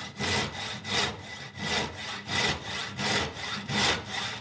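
Hand saw cutting across a 2x4 of softwood lumber, in a steady back-and-forth rhythm of about three strokes every two seconds.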